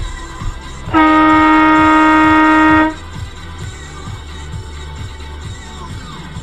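A car horn sounds in one steady blast of about two seconds, starting about a second in. Music with a steady beat plays underneath.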